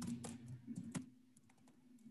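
Faint computer keyboard keystrokes: a quick run of about eight clicks over the first second and a half as a short word is typed, over a faint steady low hum.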